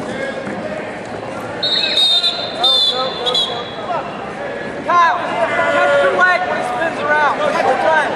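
Shouting from coaches and spectators in a large hall, with a referee's whistle sounding in short shrill blasts from about two to three and a half seconds in, stopping the action.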